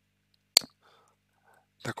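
A single sharp click about half a second in, in an otherwise near-silent pause, followed by faint soft noise; a man's speech starts again near the end.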